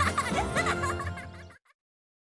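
Cartoon soundtrack music with characters giggling, cutting off abruptly about one and a half seconds in, then silence.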